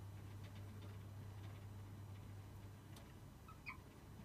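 Felt-tip marker writing on a whiteboard: faint strokes, with a few short squeaks of the tip near the end, over a steady low hum.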